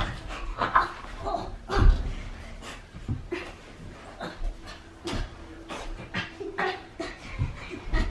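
Two young children wrestling on a carpeted floor: short, irregular bursts of panting, grunts and squeals, with an occasional low thud.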